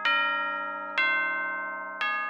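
Clock chime: a deep bell-like tone struck about once a second, each strike ringing and fading before the next, as the clock strikes the hour in the rhyme.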